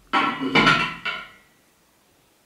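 A lid with a handle being set down onto a metal 5-litre beer keg: a metallic clatter of several quick knocks with a brief ring, lasting about a second and a half.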